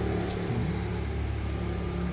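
A steady low mechanical hum with a faint background haze and one faint click shortly after the start.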